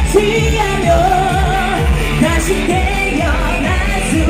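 Live K-pop performance through a PA: singing over an amplified pop backing with a steady beat of about two a second.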